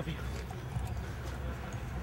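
Footsteps on pavement mixed with the rustle of a handheld camera being swung and carried, over a low steady hum.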